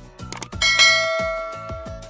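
A mouse-click sound followed by a single bright notification-bell chime about half a second in, ringing out and slowly fading. It plays over background music with a steady beat.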